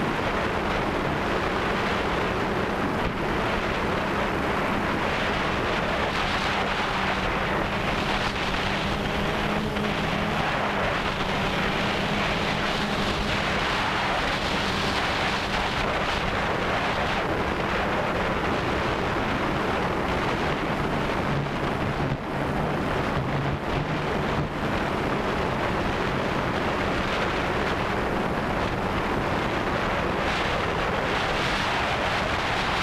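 DJI Phantom 2 quadcopter's brushless motors and propellers running in flight, recorded by its onboard camera: a steady hum mixed with wind rushing over the microphone. The hum's pitch shifts slightly as the motors change speed, with a lower tone joining a little past the middle.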